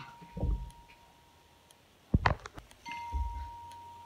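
A faint, steady high-pitched electronic whine that drops out for about a second in the middle, with a quick cluster of sharp clicks about two seconds in.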